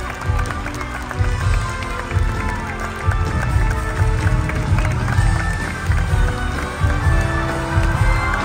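Live theatre orchestra playing the curtain-call music of a stage musical, picked up from the audience seats with a dense low end.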